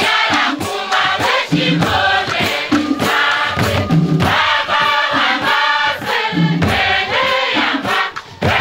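A large group of men and women singing together to goblet-shaped hand drums beaten in a steady rhythm.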